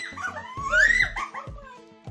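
Girls shrieking and laughing in high squeals as a raw egg is cracked over one girl's head, with one rising cry peaking about a second in and then fading. Background music plays underneath.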